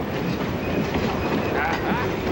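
Train running, a steady rumble and rattle heard from inside the carriage.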